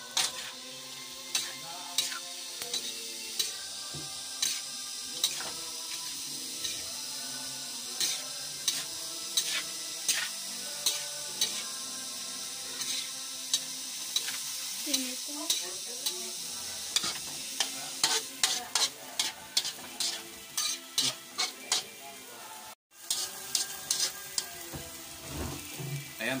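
Julienned sagisi palm heart stir-frying in a wok: a steady sizzle under the spatula scraping and knocking against the pan, strokes about a second apart that come faster in the last third. The sound cuts out for an instant near the end.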